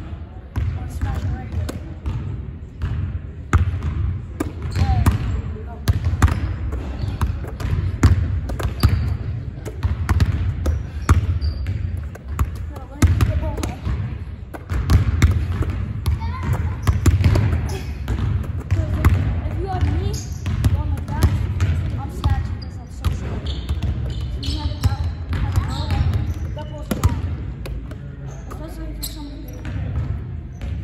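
Basketballs being passed, bounced and caught on a hardwood gym floor: an irregular run of sharp smacks and bounces, with voices in the background.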